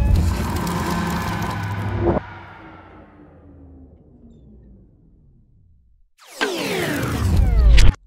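Cinematic logo sting sound effects: a deep impact hit with a long ringing tail that fades away over several seconds, with a second short hit about two seconds in. After a brief silence a whoosh swells up with falling sweeps, growing louder and cutting off suddenly near the end.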